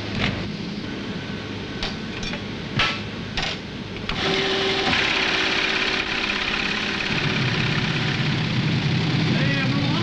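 Data-processing machinery running: a few separate clicks and knocks, then about four seconds in a machine starts and runs steadily with a low hum.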